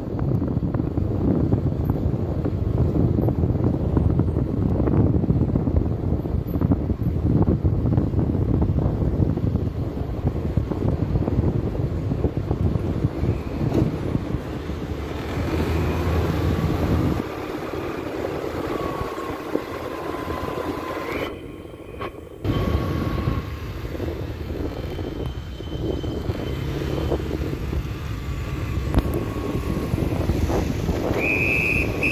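Wind buffeting the microphone: a steady low rumbling noise that eases off in the second half, with faint thin high tones coming and going.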